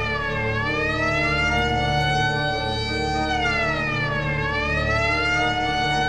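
A wailing siren, its pitch sliding down, then slowly up and down again in a cycle of about four seconds, over a steady low musical drone.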